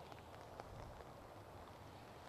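Near silence, with a faint scattered patter of light rain.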